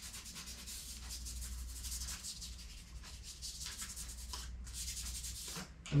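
Kinesiology tape (RockTape) on a shin being rubbed down briskly with a piece of its paper backing: a rapid back-and-forth scratchy rubbing of paper over tape that warms the tape to activate its glue. The rubbing stops shortly before the end.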